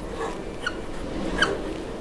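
Whiteboard marker squeaking against the board in short strokes while drawing: two brief, high squeaks about a second apart.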